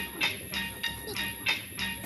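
Footsteps climbing the stairs of a metal-framed observation tower: a quick, even run of treads, about three a second.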